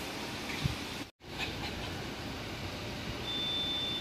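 Steady background hum and hiss, broken by a brief dropout to silence about a second in; a thin, steady high tone comes in near the end.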